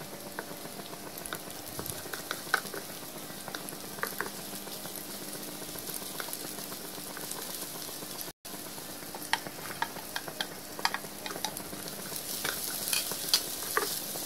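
Sliced shallots and garlic sizzling in hot oil in a nonstick frying pan, sautéed until fragrant, while a wooden spatula stirs and scrapes, clicking against the pan now and then. The sound drops out for an instant about eight seconds in.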